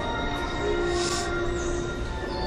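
An attraction's piped ambient soundtrack: steady held tones over a low wash of noise, with a brief hiss about a second in.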